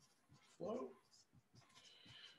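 Dry-erase marker writing on a whiteboard: faint scattered ticks and scratches, with a thin high squeak near the end.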